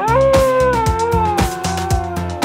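A cartoon werewolf howl: one long call that rises at the start and then slowly sinks. It plays over upbeat children's music with a steady beat.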